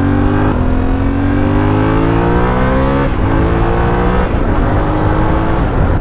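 Yamaha Ténéré 700 World Raid's 689 cc CP2 parallel-twin engine pulling hard under acceleration. Its pitch climbs, drops at a gear change about three seconds in, climbs again and drops at another upshift just after four seconds.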